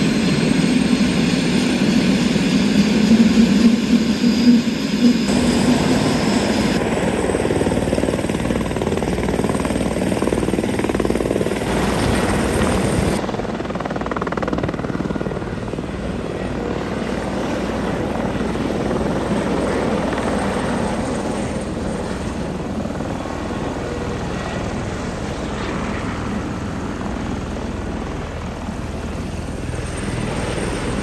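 Airbus Helicopters EC130's Safran turboshaft engine and rotors running on the pad, then the helicopter lifting into a low hover and flying away. The sound changes abruptly a few times where the footage is cut, and it turns from a strong low hum into a broader rushing noise in the second half.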